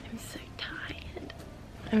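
A woman whispering softly, with voiced speech starting right at the end.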